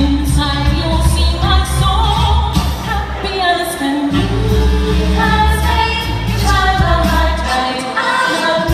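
A woman sings a pop-style song into a handheld microphone over an amplified backing track with a heavy bass beat. The bass drops out briefly about four seconds in.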